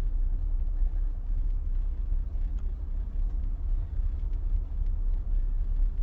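Outdoor field recording dominated by a steady low rumble, with a few faint ticks.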